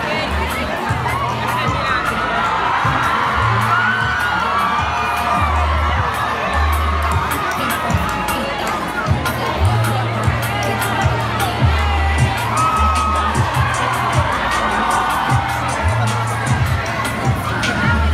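A large crowd of young people cheering and shouting together, many voices at once, with music with a deep bass line playing underneath.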